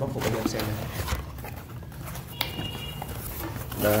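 A cardboard box with foam packaging being opened and handled: irregular knocks, scrapes and rustles, with a brief squeak about two and a half seconds in.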